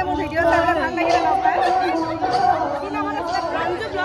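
Speech only: people talking over crowd chatter.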